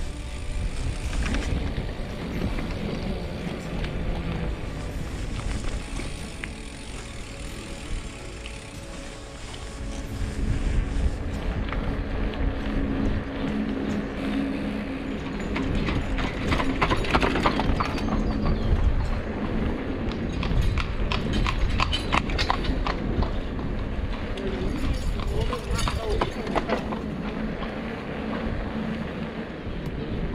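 Hooves of a two-horse carriage clip-clopping as it passes, a run of sharp clops about midway through. Under it runs the steady rumble of wind on a handlebar-mounted action camera while riding.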